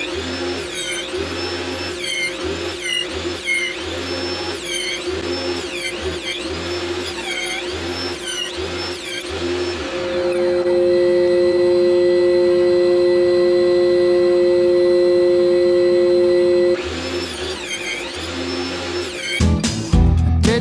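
Background music, broken for about seven seconds in the middle by the steady hum of a table saw motor running, which stops abruptly as the music returns.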